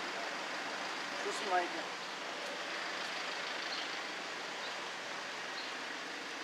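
Steady hum of distant city traffic, with a short bit of voice about a second and a half in.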